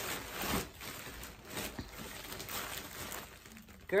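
Plastic bag rustling and crinkling as it is handled and opened, loudest about half a second in and dying down near the end.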